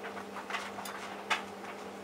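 Hotpoint Aquarius+ TVF760 vented tumble dryer running, with a steady motor hum and the drum turning. The tumbling load gives a few short knocks against the drum, the sharpest a little over a second in.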